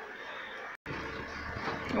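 Low, even outdoor street background noise, broken by a brief dropout to complete silence a little under a second in.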